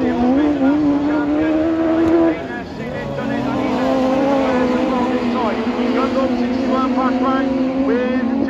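Autograss saloon race-car engines running hard at high revs as the cars lap a dirt track: a steady droning engine note. It breaks off about two seconds in and comes back a moment later at a slightly lower pitch.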